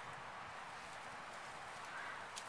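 Faint, steady outdoor background noise, an even hiss with no distinct events.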